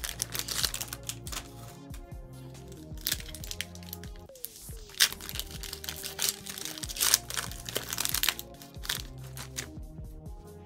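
Foil booster pack wrapper crinkling and tearing as it is opened by hand, in a string of short sharp crackles, the sharpest about halfway through. Background music plays throughout.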